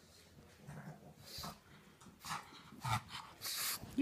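A pug's noisy breathing in several short, airy bursts that get louder and closer in the second half.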